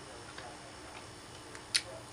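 Quiet room tone with a few faint ticks and one short, sharp click about three-quarters of the way through.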